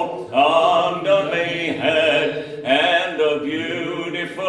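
A man singing a folk song unaccompanied, in long held notes, with a brief breath pause just after the start.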